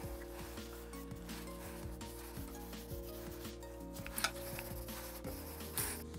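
A cloth rubbing spirit stain into a rosewood guitar fretboard in repeated wiping strokes, faint, over quiet background music with sustained chords.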